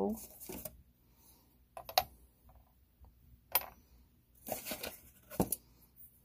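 Cast aluminum ingots being set down and stacked on a digital scale: a few sharp metallic clinks and knocks, spaced out, with a cluster of them near the end.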